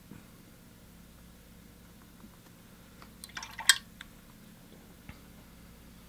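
Quiet room tone broken by a short cluster of small clicks and taps about three and a half seconds in, from a paintbrush and painting gear being handled.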